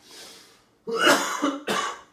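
A person's breathy vocal bursts, coughing or laugh-like. A soft breath comes at the start, then a loud burst about a second in and a shorter one near the end.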